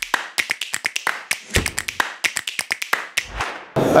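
Edited-in transition sound effect: a rapid, uneven run of crisp clicks and taps, with a low thump about one and a half seconds in and another near the end.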